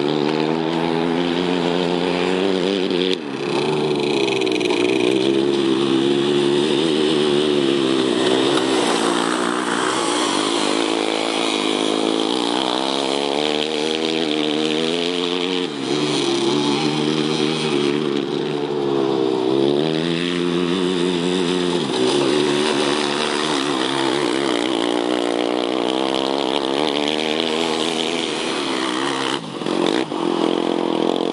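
Small go-kart engines revving up and down over and over as the karts accelerate and lift off through the corners of an ice track, with a few abrupt breaks.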